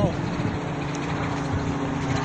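Distant aircraft overhead, a steady low drone with a few held tones, which a listener takes for a helicopter.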